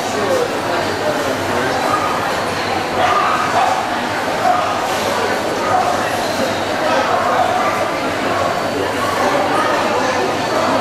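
Dogs barking and yipping over a steady babble of many voices.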